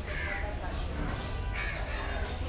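A crow cawing twice, once at the start and again about a second and a half in, over a steady low rumble.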